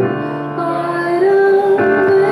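Live band music with a woman singing long held notes over keyboard accompaniment.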